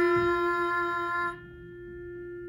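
Digital piano sounding and holding a single note F, the pitch just sung in an ear game, to check it. The upper tone drops away about a second and a half in, leaving the note fainter.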